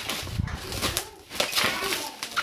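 Plastic bubble wrap crinkling and rustling in irregular crackles as hands grip and turn a wrapped box, with a short lull a little past the middle.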